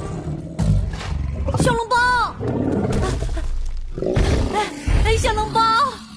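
A cartoon tyrannosaur vocalising in roar-like calls: two pitched calls that rise and fall, about two seconds in and again near the end, between heavy low thuds.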